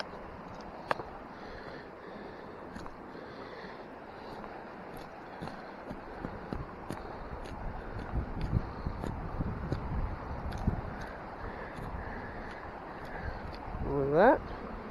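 A pocketknife trimming a thin green privet stick: scattered small clicks and scrapes of the blade on the wood, over a steady outdoor background hiss. Between about 8 and 11 seconds, low rumbling thumps from handling and wind on the microphone.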